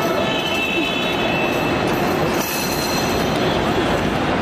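Steady din of an outdoor crowd and traffic, with faint voices and a thin high whine or squeal in the first second or two.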